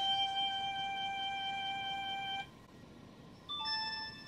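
Steady single notes played by a violin-notes learning app through a phone's speaker: one held note for about two and a half seconds, then after a short pause a brief higher note stepping down to a second note near the end.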